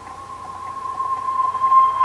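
A single held musical tone swelling steadily louder: the fade-in that opens a piece of background music.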